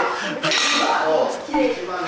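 Metal weight plates on a barbell clanking as the bar is set down on the gym floor, with a voice under it.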